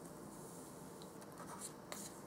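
Small plastic spoon stirring a wet candy-kit mixture in a thin plastic tray, scraping against the tray in short, quick strokes from about a second in. Before that, a faint soft hiss.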